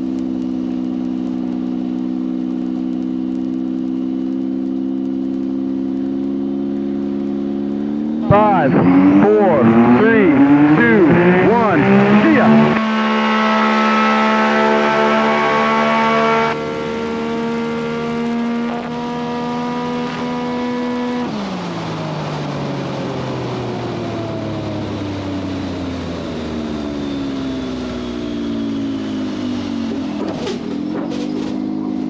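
Single-engine bush plane's piston engine and propeller, heard from the cockpit, running steadily at the start line, then opened up to full power about eight seconds in with its pitch rising for a drag-race launch down the runway. It holds a loud steady note for several seconds, and over the last ten seconds its pitch falls steadily.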